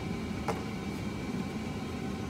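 Steady hum of a car interior, the engine idling with the air-conditioning blower running, and a single short click about half a second in.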